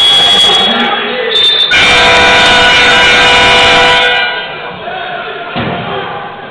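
Basketball arena horn sounding for about two and a half seconds, a loud steady buzz with many overtones, signalling a stoppage in play. Before it, in the first second or so, a high steady tone like a referee's whistle, over crowd noise in the gym.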